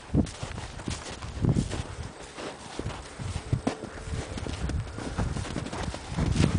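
A paint horse moving in snow close to the microphone: irregular soft thuds and crunches of its hooves.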